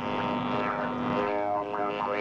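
Steady electronic buzzing drone of several held tones from the Spiricom device's tone generator, heard between its robotic voice phrases. The set of tones shifts a little past a second in.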